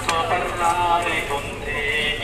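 Several people's voices talking over one another, with one sharp click just after the start.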